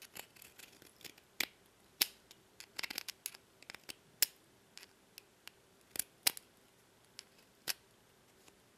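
Handheld deburring tool's blade scraping along the cut edge of an aluminium panel in short, irregular strokes, shaving off burrs and slag; quiet, sharp scrapes and clicks.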